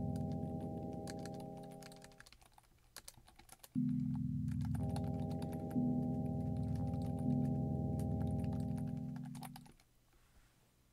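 Sustained synthesizer chords played by a Sonic Pi live loop: one chord fades out about two seconds in, and after a short gap a second, louder chord starts, its lower notes changing twice before it dies away near the end. Computer keyboard keys click throughout as code is typed live.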